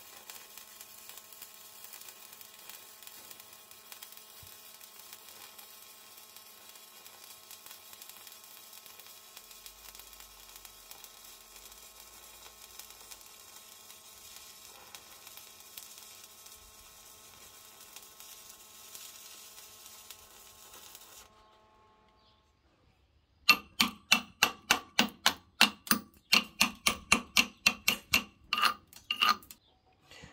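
Stick (MMA) welding arc of a 2.5 mm Chem-Weld 8200 rutile-basic electrode, a steady hiss for about twenty seconds. After a short gap, a chipping hammer strikes the weld about three times a second for some six seconds, knocking off slag that comes off easily.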